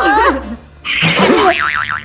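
Comic "boing"-style sound effect: a short rising squeal, then a tone that wobbles quickly up and down in pitch for about half a second near the end.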